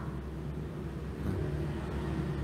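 A low, steady rumble with no clear pitch, swelling slightly about half a second in.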